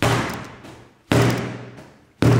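Two sudden heavy thuds about a second apart, each fading out over about a second.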